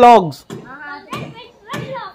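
Children's voices calling across to each other: a loud shouted call that ends just after the start, then a fainter, higher voice talking.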